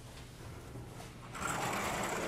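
A sliding blackboard panel being moved along its track: a steady rolling rumble that starts about a second and a half in.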